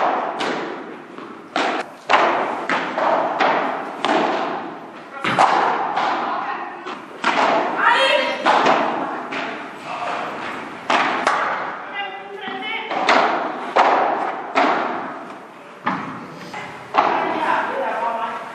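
Padel rally: the ball being struck by padel rackets and bouncing off the court and glass walls, a sharp pop every half second to a second, each one echoing in a large hall.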